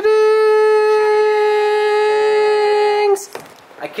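A single long note held at one steady pitch for about three seconds, then cut off suddenly, sounding like a reveal fanfare.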